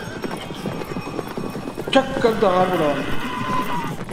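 Horses galloping away with a cart: a rapid, dense clatter of hoofbeats, with a single sharp crack near the middle.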